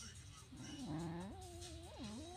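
Beagle's low growl that rises in steps into a drawn-out, whining howl-like grumble: a warning while it guards the TV remote.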